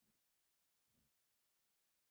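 Near silence, broken by two very faint short sounds, one at the start and one about a second in.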